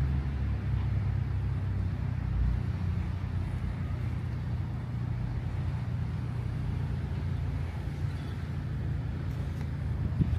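A steady low engine rumble that holds unchanged throughout.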